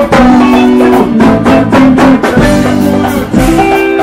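Live band playing loud amplified music with a steady beat and held melody notes.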